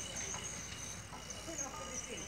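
Outdoor ambience: faint, distant voices with a steady high-pitched chirping running underneath.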